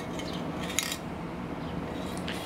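Light metallic clicks of an aerosol spray-paint can handled in the hand, with one sharper click a little under a second in.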